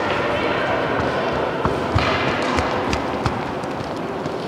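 Children's tennis balls bouncing on a sports hall floor: a handful of short thumps from about one and a half seconds in, over a background of voices.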